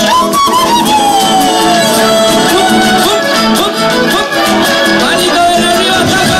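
Live Argentine folk band playing, a fiddle carrying the melody over guitars, with a long note sliding down in pitch over the first two seconds.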